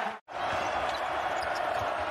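Basketball being dribbled on a hardwood court, low thumps a few times a second, over steady arena crowd noise. The sound cuts out for a moment just after the start.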